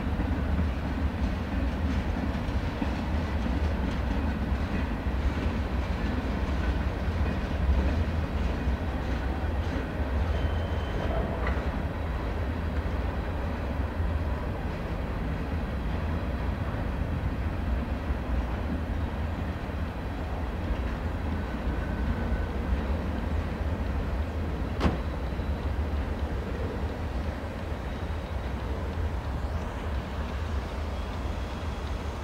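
CSX freight train of tank cars and covered hoppers rolling past: a steady rumble of steel wheels on rail, with one sharp click near the end.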